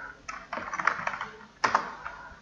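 Typing on a computer keyboard: a quick run of separate keystrokes, the sharpest about one and a half seconds in.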